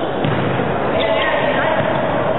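Volleyball struck with two sharp smacks, one near the start and one about a second in, over a steady din of spectators' voices and players' calls.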